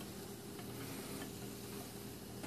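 Lendrum spinning wheel running, faint and steady, with a few light ticks as the flyer turns and the yarn is spun.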